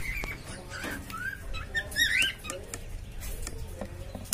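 Newly hatched cockatiel chicks in the nest box giving faint, high squeaky peeps, a few short cheeps that rise and fall in pitch, scattered through the moment.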